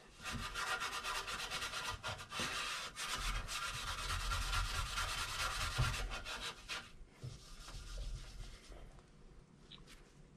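Fine 0000 steel wool scrubbed rapidly back and forth over a chrome bumper overrider, a dense scratchy rubbing as it takes off light surface rust. The strokes ease off and turn softer about seven seconds in.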